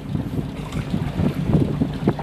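Wind buffeting the microphone in a low, uneven rumble aboard a boat trolling on a windy, choppy lake.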